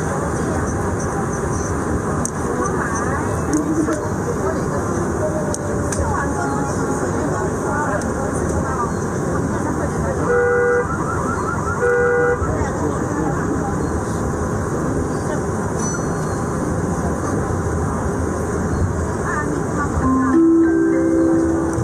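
Metro train running between stations, heard from inside the car as a steady rumble. About halfway through come two short horn toots about a second and a half apart.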